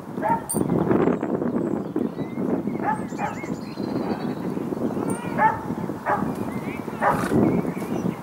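Short arching animal calls, about five of them spread through, over a steady rush of wind on the microphone.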